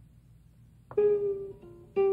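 Background music on a plucked string instrument. After faint room tone, single plucked notes begin about a second in, each ringing and fading, with a second note just after.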